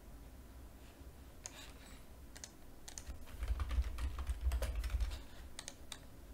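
Typing on a computer keyboard: a quick run of keystrokes starting about a second and a half in, with a low rumble under the middle of the run.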